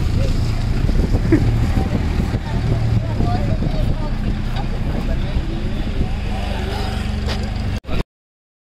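Engine of an old open jeep-type vehicle running with a steady low rumble, with its passengers chattering and calling out over it. The sound cuts off abruptly near the end.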